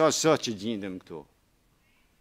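A man's voice speaking for about a second, stopping short, then near silence.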